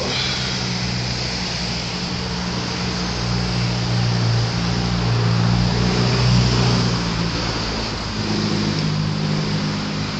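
Car traffic driving through an intersection close by: engine hum and tyre noise, swelling as a car passes close about six seconds in and again near the end.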